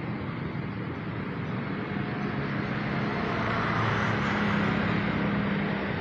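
Street traffic: a steady rumble of passing vehicles' engines and tyres, swelling a little through the middle as a vehicle goes by.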